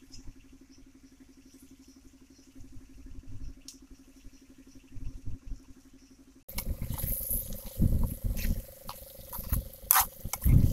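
A faint steady hum with a slight pulse and a few soft knocks. About six and a half seconds in, the sound jumps to close, much louder cooking noise from a wok of chicken stir-frying over a wood fire: low rumbling bursts, a high hiss and the clicks of a spatula against the pan.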